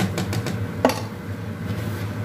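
A plastic rice paddle scraping and knocking against metal pots as cooked rice is tipped into a pot of boiling water: a few light clicks, then one sharp knock a little under a second in, over a steady low hum.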